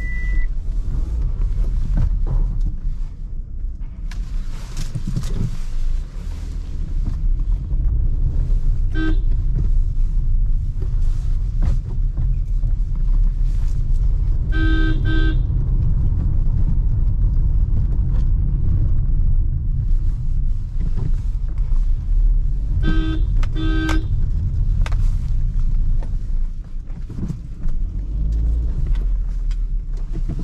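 Low, steady engine and tyre rumble inside a Maruti Suzuki Ciaz's cabin as it creeps along at low speed. Short car-horn honks cut in: one brief toot about nine seconds in, a longer one near the middle, and two quick ones near the end. A short high beep sounds right at the start.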